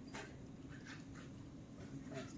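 Quiet room tone: a steady low hum with a few faint short clicks or taps, four of them within the first second and a half.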